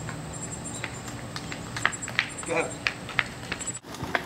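Footsteps of an adult in sandals on a concrete driveway, a few irregular slaps, over a steady high buzzing of insects. The sound drops out briefly near the end.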